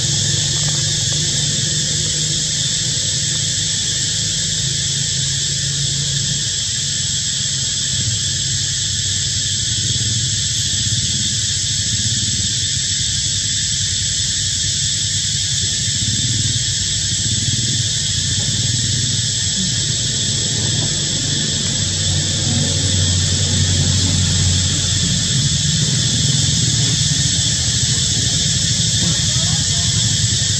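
Continuous high-pitched insect drone, as from a cicada chorus, holding steady throughout, over a low rumble.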